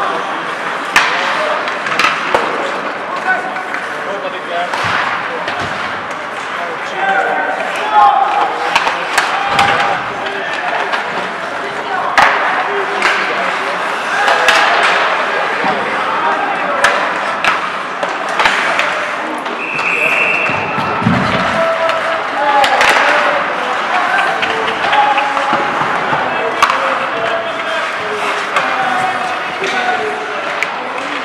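Live ice hockey rink sound: sticks and pucks clacking and sharp knocks against the boards, with players calling out to each other. One short high whistle sounds about two-thirds of the way in.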